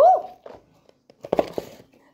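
An excited shout of "woo!" that rises then falls in pitch. About a second later comes a short sharp knock with rustling right at the microphone: handling noise as the chicken bucket is pushed against the phone.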